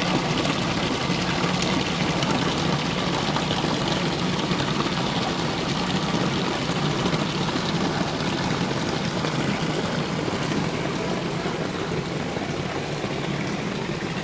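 Water splashing steadily from a small waterfall running down a stone wall into a shallow pebble pool, over a steady low hum.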